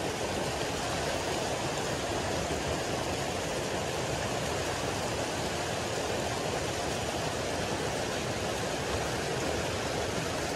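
Water gushing steadily from inlet spouts into a concrete trout pond, mixed with the splashing of trout thrashing at the surface for feed.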